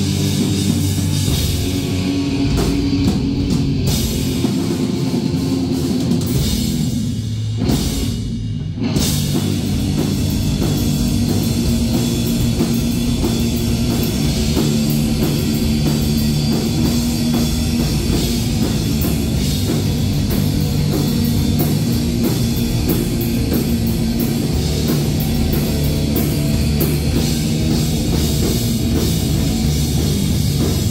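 Live rock band playing loud, with distorted electric guitars and a pounding drum kit. About eight seconds in the band briefly drops back for a moment, then comes back in at full force.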